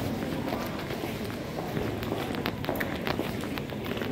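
Footsteps on a hard floor in an indoor shopping arcade, a run of short sharp steps over the steady background noise of the concourse.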